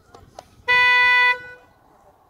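A single short horn toot, a steady pitched beep lasting about two-thirds of a second, sounded as the start signal for the dressage test.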